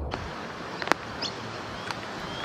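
Outdoor background ambience: a steady hiss with a single sharp click just under a second in and a few faint, high, short chirps.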